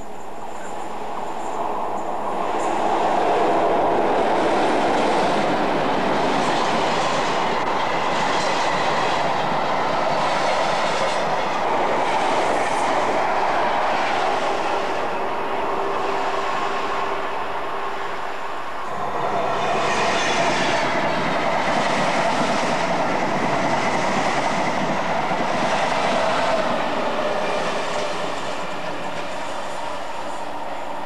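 Trains passing at speed along the main line, a continuous rush and rumble of wheels on rail that builds about two seconds in. It breaks off sharply about two-thirds of the way through, and a second passing train follows.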